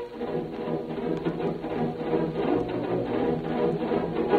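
Orchestral music in a soft passage, brass over low held notes.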